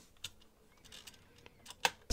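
A few quiet clicks at a computer, the loudest one shortly before the end, as the paused song is skipped back and restarted.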